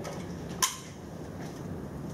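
A single sharp click about half a second in, over quiet room tone: a laptop keyboard key being pressed.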